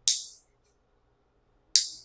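Nail clipper snipping through fingernails during a manicure: two sharp, bright clicks about 1.7 seconds apart, each ringing briefly.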